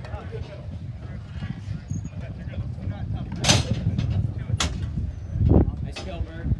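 Ball hockey play: two sharp cracks about a second apart, sticks and ball striking, then a dull thump near the end, over a constant low rumble.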